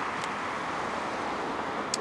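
Steady outdoor hiss as a Tesla Model S creeps slowly across asphalt under Smart Summon, its electric drive making almost no sound of its own; a brief tick near the end.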